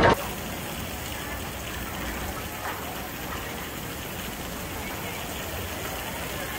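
Steady outdoor amusement-park background noise with faint, distant voices.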